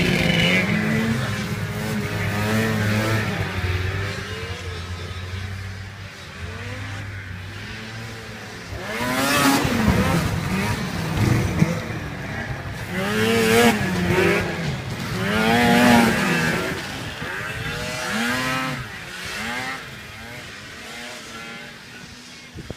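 Racing snowmobile engine revving up and down over and over, its pitch climbing and dropping with each throttle change. It comes in louder surges about nine, thirteen and sixteen seconds in and fades near the end.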